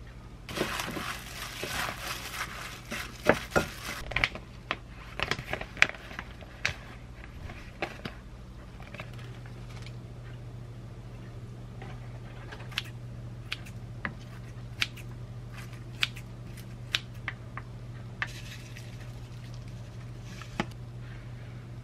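Kitchen food-prep sounds: a few seconds of plastic crinkling and rustling, then scattered light clicks and clinks of utensils and metal tongs against dishes, over a steady low hum.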